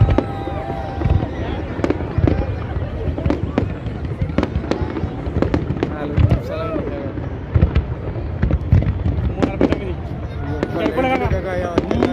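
Fireworks display: irregular bangs of bursting shells, several a second, over a continuous low rumble. People's voices are close by, clearest near the end.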